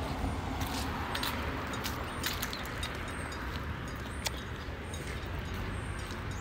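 Steady street traffic noise, with a few faint clicks over it.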